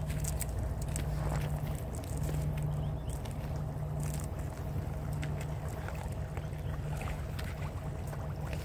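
A vehicle engine running at a steady idle, a low hum, with scattered faint clicks over it.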